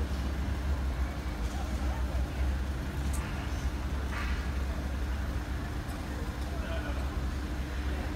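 Steady low rumble of idling engines and street background at a closed level crossing, with faint voices of people nearby.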